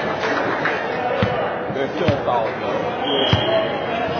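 A volleyball bouncing on a hardwood gym floor: three separate thuds about a second apart, echoing in the large hall, over distant voices. A brief high steady tone sounds about three seconds in.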